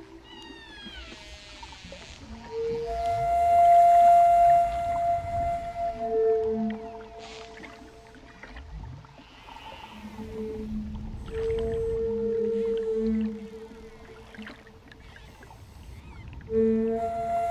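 Humpback whale song, with descending cries near the start and low moans, mixed with a wooden Native American-style flute playing long held notes over it from a few seconds in.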